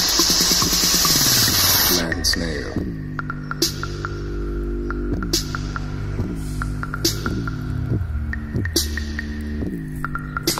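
A small portable speaker driven hard on a bass test track. Dense, loud music for the first two seconds gives way to a repeating pattern of deep bass notes sliding downward, each with a sharp percussive hit, about every second and a half.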